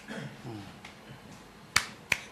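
A single sharp click near the end, over quiet room sound, with a faint voice at the start.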